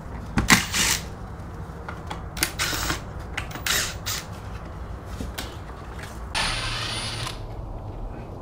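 Cordless drill/driver working screws in the window frame. It runs in several short bursts, then one longer run of about a second near the end with a thin high whine.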